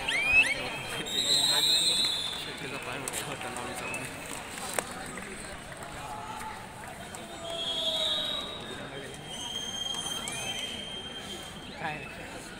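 Shouted calls and voices of kabaddi players and onlookers, rising and falling in loudness, with a single sharp click about five seconds in.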